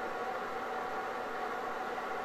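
Faint, steady room tone: an even hiss with a light constant hum and no distinct handling sounds.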